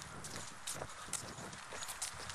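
Footsteps of many walkers passing on a hard path: irregular short taps of shoes, several a second.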